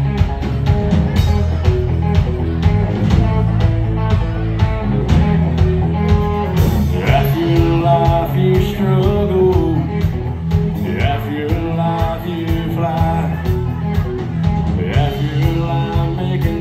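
Live band playing country-rock with electric guitar, bass and drums keeping a steady beat. A lead vocal line comes in about seven seconds in.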